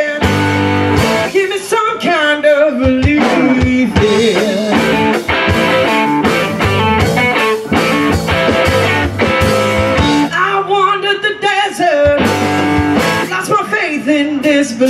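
Live blues-rock trio playing: electric guitar, electric bass and a drum kit, with a woman singing at times.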